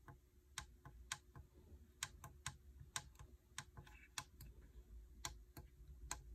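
Small push buttons on a Universal Audio Apollo Twin X audio interface being pressed by finger: a quick, irregular run of faint, sharp clicks, about two to three a second.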